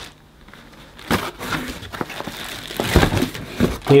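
Clear plastic bag crinkling and rustling, with clicks and a couple of bumps about three seconds in, as a bagged vacuum floor head is handled and lifted out of a cardboard box. The first second is nearly quiet.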